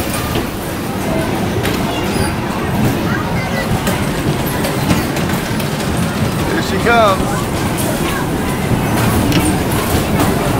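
Bumper cars running on the rink: a steady, loud din from the moving cars, with a brief high-pitched squeal about seven seconds in.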